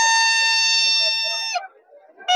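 A pipudi, the Rajasthani fair toy pipe, blown in one long steady high note that cuts off about one and a half seconds in.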